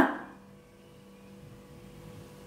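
Quiet room tone with a faint steady electrical hum, just after a woman's voice trails off at the start.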